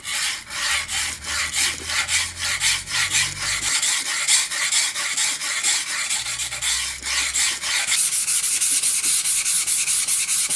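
Plane iron being honed on a wet sharpening stone: steel scraping back and forth in quick, even strokes, about three a second. Near the end the strokes come faster with a brighter, hissier sound.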